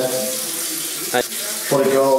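Water running from a bathroom tap into a washbasin, a steady rush. A short sharp knock comes a little after a second in.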